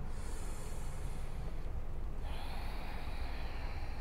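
Ujjayi yoga breathing, an audible hiss of breath through a narrowed throat: one breath at the start, a short pause, then another breath beginning a little after two seconds in, over a steady low rumble.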